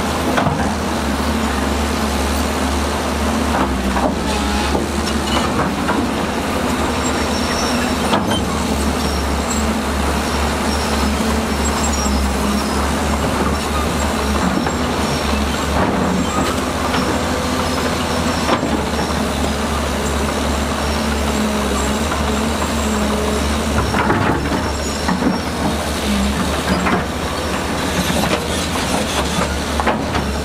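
Heavy diesel construction machinery running steadily with a deep engine hum, broken by a few short knocks.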